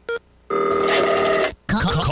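A telephone ring sound effect: one ring about a second long, after a brief click. It cuts off sharply, and music starts right after it near the end.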